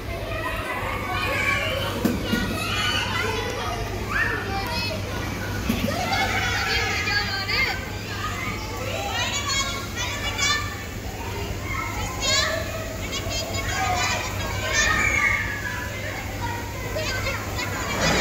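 Young children playing, their high-pitched voices calling, chattering and squealing over one another, over a steady low hum.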